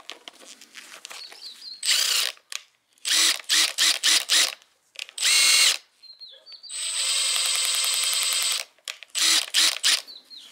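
Makita cordless brushless drill driving a blind rivet adapter, run in short trigger pulls: a burst, a quick series of five pulses, one that winds up in pitch, a steady run of about a second and a half, then three more quick pulses.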